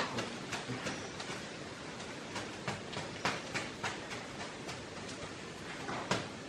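Irregular light clicks and taps over a steady hiss at a wood-fired griddle where a large cassava bread is being worked with a woven fan.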